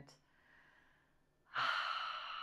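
A moment of near silence, then a woman's audible breath, starting about one and a half seconds in and lasting about a second.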